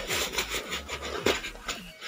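Fabric laptop bag rustling, with the soft knocks of a plastic charger brick and its cable being pushed into the bag's zip pocket. The sound is irregular handling noise, with no steady tone.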